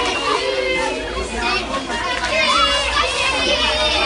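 A crowd of excited schoolchildren shouting and cheering all at once, many high voices overlapping.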